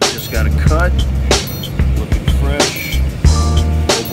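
Background music with a steady beat and heavy bass, with a voice singing over it.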